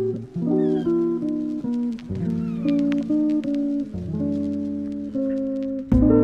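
Background music: a plucked guitar playing a melody of short notes over sustained lower notes.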